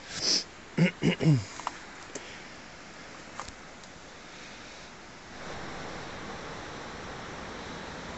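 A quick breath and three short falling vocal sounds from a hiker picking his way down, then the steady rush of unseen waterfalls through the forest, which grows louder about five seconds in.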